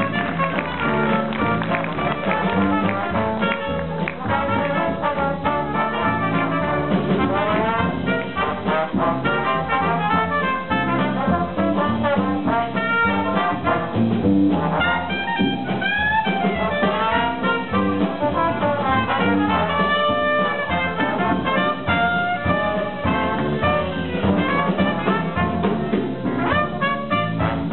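A small Dixieland jazz band playing live: trumpet, clarinet and trombone together over piano, upright bass and drums.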